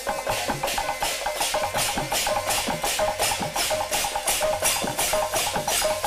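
Folk kirtan ensemble playing an instrumental passage: a barrel drum and small brass hand cymbals keep a fast, even rhythm under a steady melodic line of short held notes.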